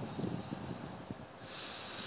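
Light wind buffeting the microphone. Near the end comes a short hissing exhale close to it, like a breath out through the nose.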